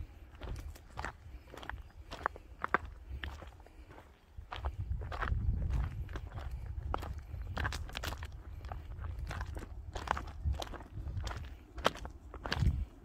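Footsteps crunching on a stony gravel footpath at a walking pace, about two steps a second. A low rumble joins in from about four seconds in.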